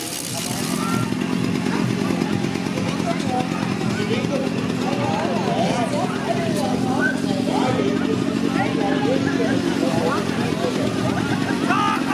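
A steady, low engine drone with a fast pulse, under many overlapping voices calling out.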